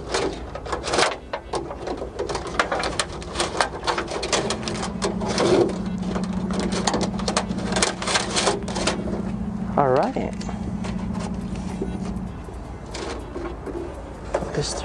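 Irregular clicks and rattles of a thin camera cable and hands working it through the sheet-metal frame of a car's trunk lid. A steady low hum runs through the middle, with a brief wavering tone about ten seconds in.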